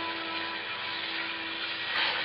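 Orchestral music bridge between scenes: a sustained string chord held and slowly fading, ending just before the end.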